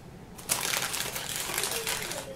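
Parchment paper crinkling as it is handled, a dense crackle that starts about half a second in.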